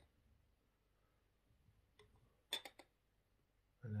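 Near silence broken by a few light glass clinks, a quick cluster of three or four about two and a half seconds in, as the glass sauce bottle is handled against the drinking glass.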